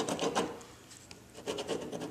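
White gel pen scratching across cardstock as it rules a line along a plastic ruler, in short strokes, with a quieter pause about halfway through before the strokes start again.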